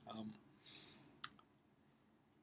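A man's brief hesitant 'um', then a soft breath and one sharp click a little over a second in, followed by near silence.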